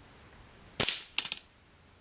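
A .177 Daystate Huntsman Classic air rifle with a shrouded barrel firing, and its pellet striking a steel target plate. There is one sharp crack a little under a second in that dies away within half a second, then a quick rattle of several clicks.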